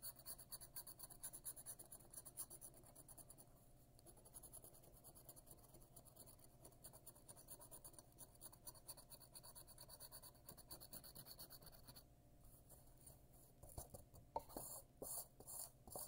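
Faint, rapid scraping of the coating being scratched off a paper scratch-off lottery ticket, steady for about twelve seconds and then dying down. A few louder separate swipes come near the end.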